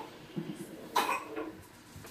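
A short cough about a second in, over faint room noise.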